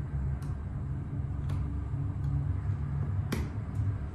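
Schindler hydraulic elevator car travelling down, a steady low hum and rumble from the car and its hydraulic drive. Faint ticks can be heard, with one sharp click about three seconds in.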